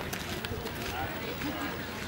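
People talking indistinctly in the background, words unclear, over outdoor ambience.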